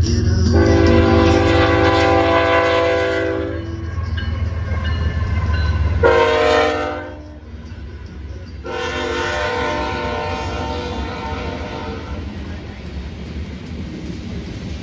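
Air horn of a CN GE ES44AC freight locomotive sounding a long blast, a short one and another long one, the close of a grade-crossing warning, over the low rumble of the diesel. The hopper cars then roll past on the rails.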